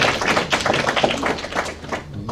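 Audience applauding, a dense run of claps that thins out and stops near the end.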